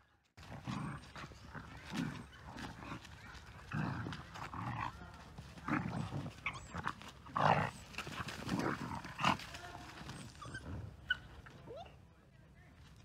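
Two dogs wrestling and scuffling, with irregular bursts of growling from about half a second in, dense and uneven, with a few short higher-pitched sounds among them.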